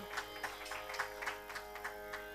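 Tanpura drone sounding steadily with no voice over it, while a run of quick, light clicks taps along at about five a second.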